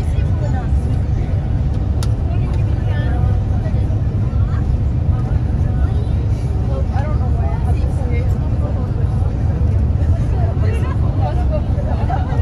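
Steady low rumble of a moving vehicle heard from inside the cabin, with faint voices talking in the background.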